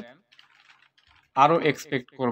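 Faint computer keyboard typing: a quick run of light key clicks in the first half, followed by a person speaking for the rest.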